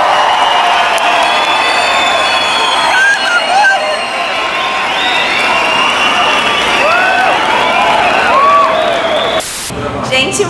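Large concert crowd cheering and screaming, with single voices whooping and shouting above it in rising and falling calls. It cuts off abruptly near the end.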